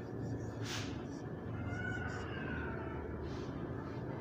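A marker squeaking on a whiteboard as two digits are written. There is a short sharp tick early on, then thin squeaky tones that rise and fall for about a second near the middle, over a steady low hum.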